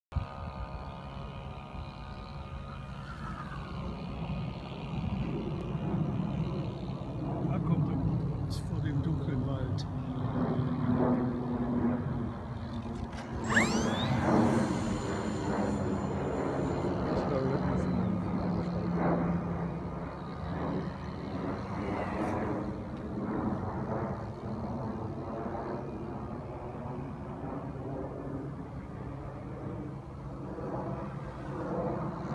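Wind buffeting the microphone with an uneven rumble, while people talk off-mic. There is a brief sharp click with a rising whistle about halfway through.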